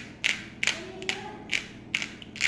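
Handheld seasoning grinder being twisted over steaks: about five short sharp clicks roughly half a second apart, with a faint thin tone in the first half.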